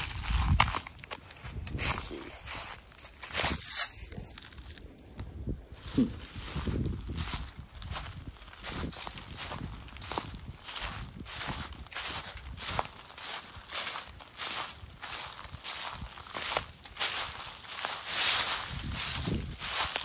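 Footsteps on dry leaf litter: a person walking at a steady pace, each step a short rustle of leaves.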